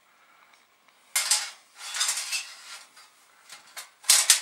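Thin sheet-metal RF shields for an Amiga 500 clattering and clinking as they are handled and sorted through, in a few separate bursts starting about a second in.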